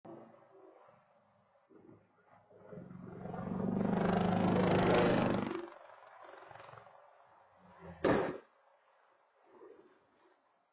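UH-60 Black Hawk helicopter passing low overhead: a loud, rough roar that builds over a couple of seconds and then fades, sounding like a car without a muffler. About two seconds later comes a single sharp boom as the helicopter hits the ground. It is picked up by a doorbell camera's microphone.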